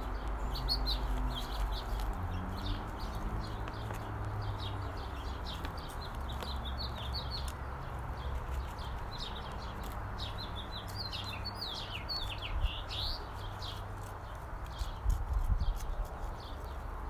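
Small birds chirping and twittering in quick, repeated calls, over a steady low rumble. A few short sharp knocks come near the end.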